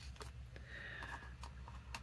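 Faint, scattered taps and light rustles of paper cutouts being handled and moved about on a sheet of paper, over a low steady hum.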